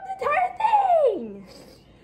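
A boy's voice exclaiming without clear words, with a long falling cry in the first half, then fading to quieter room sound.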